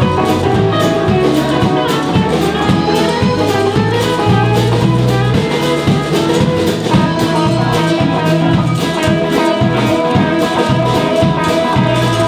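Live band playing with electric guitars, an acoustic guitar and a drum kit, a steady beat under guitar lines, no singing.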